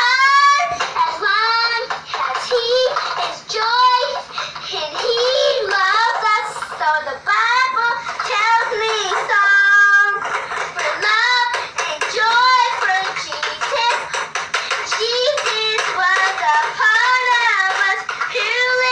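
A young girl singing in a high voice, phrase after phrase, while strumming a plastic toy guitar.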